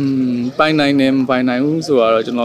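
A man speaking in a low voice, with long held vowels.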